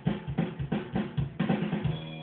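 A band's recorded track playing back through studio monitor speakers, led by a drum kit: kick and snare hits in a steady beat over low sustained bass notes.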